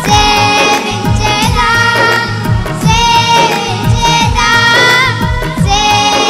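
Children singing a Telugu Christian worship song together into microphones, over musical accompaniment with a steady drum beat of about three strokes a second.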